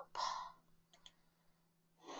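Computer mouse clicking faintly about a second in, opening a PowerPoint presentation, after a brief soft noise just at the start; otherwise near silence.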